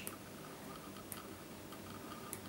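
Quiet room tone with a few faint, sparse ticks.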